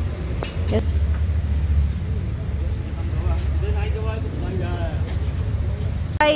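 Street ambience: a steady low traffic rumble with indistinct voices of people nearby. There are a couple of sharp clicks less than a second in.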